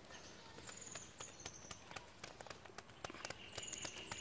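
Faint, irregular light taps and slaps as small fish are shaken out of a bamboo cage trap and flop on bare earth. A few short bird chirps sound in the background, and a steady high note comes in during the last second.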